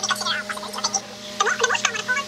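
Garbled, indistinct voice-like chatter in short rapid bursts, over a steady low electrical hum.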